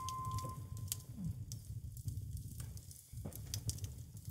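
A single grand piano note dying away in the first half second, then faint, scattered crackling of a wood fire over a low, steady hum.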